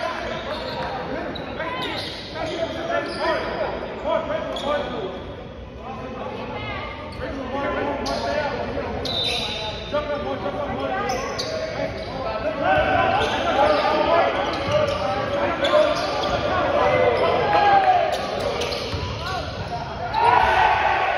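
Basketball game in a gym: a basketball bouncing on the hardwood court amid voices of players and spectators, with the echo of a large hall.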